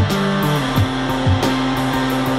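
Live rock band playing: electric guitar and bass guitar holding notes over drums, with kick drum hits and steady hi-hat ticks.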